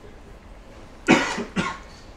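A person coughing twice about a second in, the first cough the louder.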